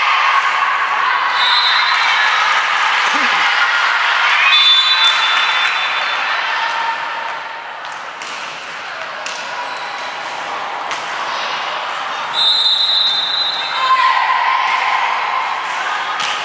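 Volleyball match in a large gym: players and spectators shouting and cheering, with sharp slaps of the ball being hit and bouncing. A few short steady high whistle blasts come through, about 1.5 s in, around 5 s and again near the end.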